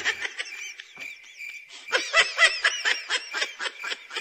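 High-pitched snickering laughter in quick repeated bursts, fainter at first and louder from about halfway through.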